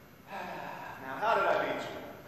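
A man's breathy gasp, then, about a second in, a short voiced sound with a wavering pitch, as of someone winded after a fall.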